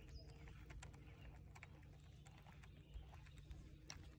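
Near silence: a faint low hum with scattered faint ticks.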